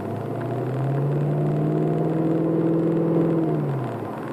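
Car engine and drivetrain heard from inside the cabin while driving, a droning note that rises slowly in pitch and gets louder under acceleration for about three seconds, then falls away shortly before the end as the throttle is eased.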